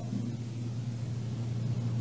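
Steady low hum with a faint hiss underneath: the background noise of an old lecture recording in a pause between spoken sentences.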